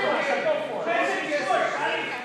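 A man shouting encouragement to a wrestler in a few loud, unclear shouts.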